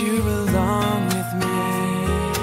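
Acoustic pop ballad: strummed acoustic guitar over bass, with a male voice singing a held, wavering note in the middle.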